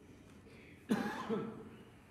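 One short cough, a throat being cleared, about a second in; otherwise quiet room tone.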